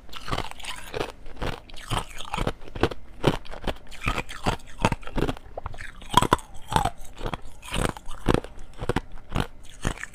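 Thin shells of ice being bitten and chewed close to a clip-on microphone: sharp, brittle crunches coming unevenly, about two or three a second.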